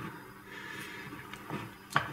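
Wooden spoon stirring soft, creamy fruit quark in a glass bowl: faint wet squelching and scraping, with a brief click near the end.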